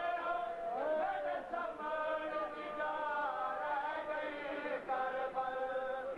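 Men chanting a noha, a Shia lament, unaccompanied, in long held notes that bend slowly in pitch.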